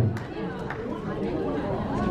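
Low background chatter: several people talking quietly in a room, with no one speaking into the microphone.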